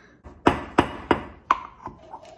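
A toddler tamping ground coffee: the metal tamper and portafilter knock against each other and the counter five times, sharp knocks about three a second.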